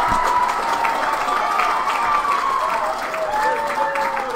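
Crowd applauding, many hands clapping at once, with voices calling out over it.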